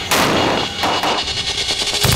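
Battle sounds: rapid gunfire with heavy blasts in a dense, continuous run that starts suddenly just after the start.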